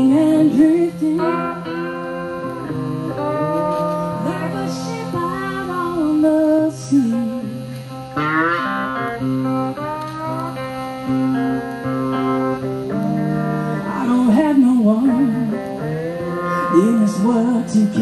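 Live blues duet on two Rusty Taylor–built cigar box guitars played through an amp, with a woman singing over them.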